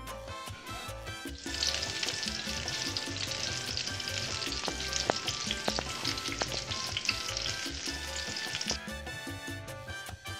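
Hot bacon grease sizzling and crackling in a glass baking dish fresh from the oven, with a few sharp pops, starting about a second and a half in and stopping near the end; salsa music plays underneath.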